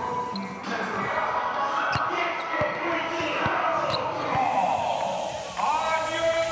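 Basketballs bouncing on a hardwood court: a few separate thuds, mostly in the middle seconds, over arena music and voices.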